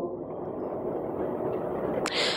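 Steady low background noise of the auditorium during a pause in speech, with a faint steady hum and no distinct events.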